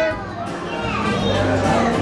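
Several excited voices calling out and laughing over one another, with background music underneath.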